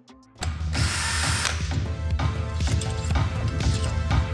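Cordless drill with a socket spinning out bolts on the engine's intake manifold, a run of about a second near the start, over background music with a steady beat.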